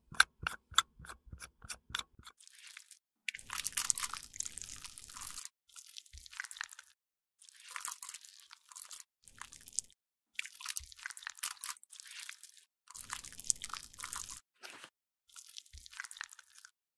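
A quick run of about seven sharp plastic clicks as a cosmetic bottle's black pump cap is worked. Then repeated bursts of crinkly, crunchy sound as a makeup spatula presses and scrapes product inside a clear plastic bag.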